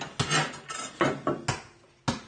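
Steel pieces knocking and clinking against each other on a wooden deck as they are handled, a few sharp metallic knocks with short rings.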